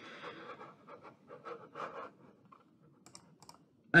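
Faint, irregular clicks and scratchy rustling close to the microphone, like keys or a mouse being handled, thinning out into a few quick ticks near the end.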